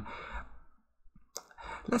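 A man's breathy exhale trailing off after speaking, then a short quiet gap with a single click about a second and a half in, and an in-breath just before he speaks again.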